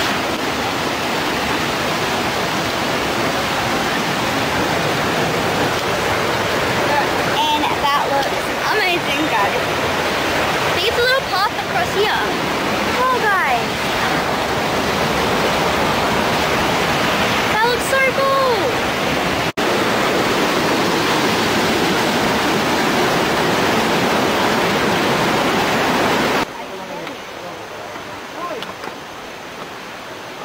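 Loud, steady rushing of a fast-flowing river cascading over rocks close by. About 26 seconds in it drops away abruptly to a much quieter background.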